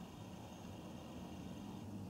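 Faint, steady hiss of room tone in a small room.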